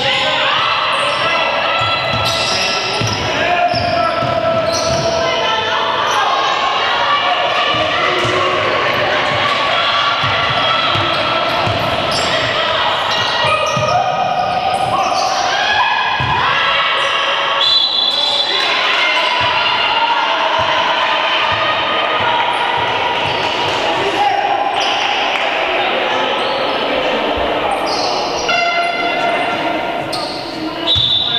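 Basketball bouncing on a wooden court during play, with players' voices calling out, echoing in a large sports hall.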